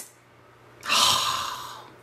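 A person taking one long, audible breath through the nose while smelling a perfume bottle held to the face. It starts suddenly about a second in and fades away over the next second.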